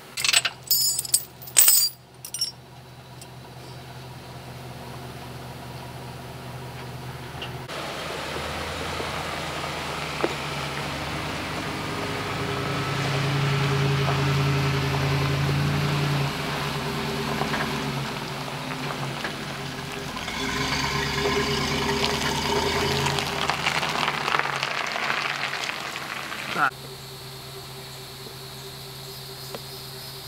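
A few sharp knocks and clicks, then a truck engine running as a trailer is towed, getting louder twice and stopping abruptly near the end.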